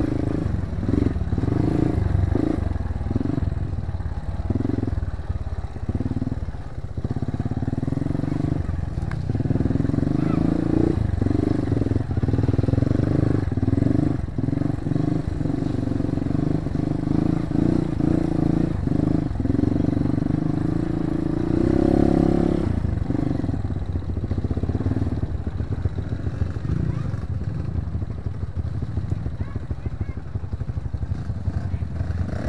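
Dirt bike engine on a steep trail climb, its throttle opened and shut in short bursts at first, then held for longer pulls. The loudest pull comes about two-thirds of the way through.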